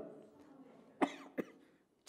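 A short cough, two quick bursts about half a second apart, the first louder, about a second in.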